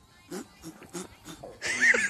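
A person's voice: a few short, soft sounds, then a loud cry near the end that runs into laughter.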